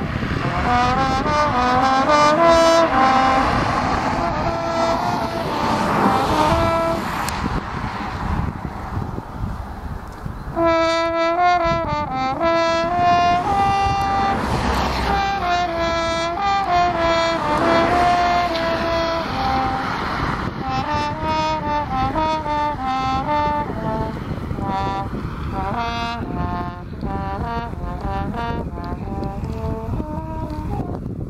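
French horn playing a melody, with a short break about a third of the way through and quicker runs of notes after it. Passing road traffic swells and fades twice behind it.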